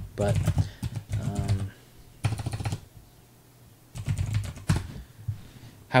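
Computer keyboard typing: three bursts of rapid keystrokes, about a second in, past the two-second mark and around four seconds in.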